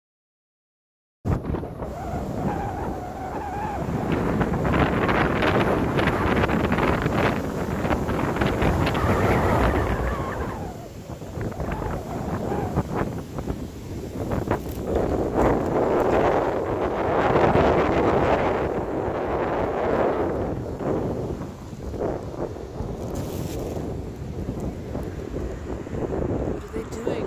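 Gusty wind buffeting the microphone, coming in suddenly about a second in and surging up and down, loudest in two long gusts, one in the first half and one about two-thirds through.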